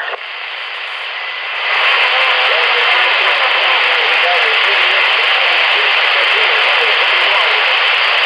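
CB radio receiver's speaker giving out a steady hiss of band noise that gets sharply louder about two seconds in, with a faint, barely readable voice buried under it: a weak distant station heard right at the noise level.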